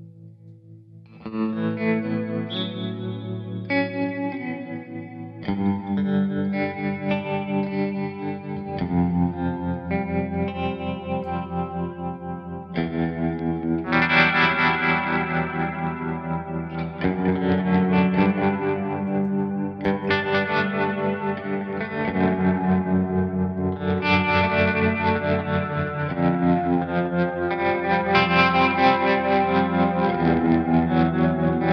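Electric guitars played together through effects pedals: a TC Electronic Pipeline tap tremolo into a Hall of Fame 2 reverb, with a Flashback 2 delay added later. A quiet held chord gives way to a loud entry about a second in, and the chords change every few seconds with a pulsing swell.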